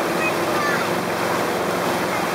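Motorboat running at towing speed, its engine a steady hum under the rush of the churning wake, with wind buffeting the microphone aboard the boat.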